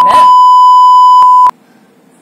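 A loud, steady, high-pitched bleep tone laid over speech, the censor bleep that masks spoken words; it cuts off suddenly about one and a half seconds in.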